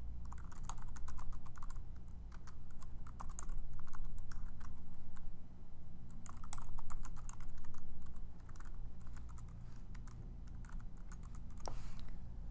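Typing on a computer keyboard: quick, irregular runs of key clicks with short pauses between them, over a steady low hum.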